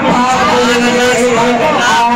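A man's voice singing a naat through a loud public-address system, drawing out long held notes with gliding ornaments between them.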